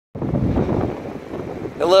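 Outdoor rumbling noise, uneven and strongest in the low end, like wind on the microphone. A man's voice starts speaking near the end.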